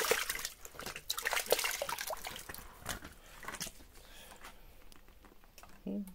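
Hands sloshing and splashing in a plastic bucket of water as they are rinsed, with irregular splashes and drips that die down after about three seconds.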